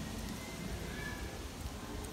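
Great Pyrenees dog licking ice cream off a small plastic spoon, soft wet licks over a steady low outdoor rumble.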